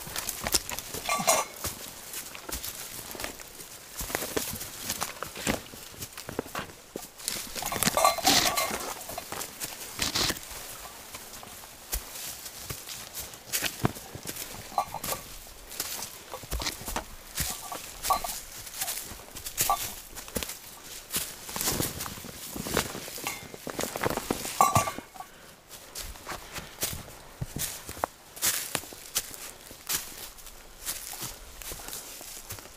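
Footsteps of hikers under heavy backpacks on a rough forest trail: irregular boot crunches and snaps on twigs, roots and leaf litter, with rustling of packs and brush. A few short pitched sounds come through now and then.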